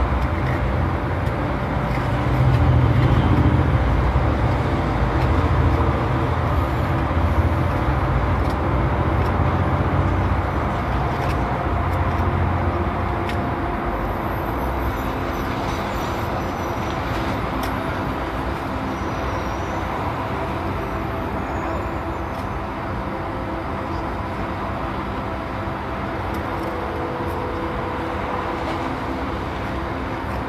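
Steady motor-vehicle engine and traffic rumble, heavier for the first dozen seconds or so, then easing slightly.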